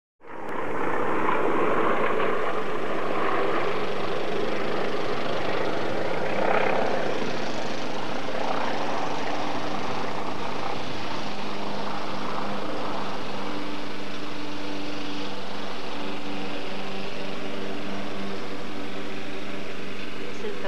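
Steady drone of a distant aircraft engine over an even background hiss, starting abruptly and holding level throughout.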